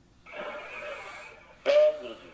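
A person's breathy, rough vocal sound lasting about a second, then a short, loud voiced sound near the end.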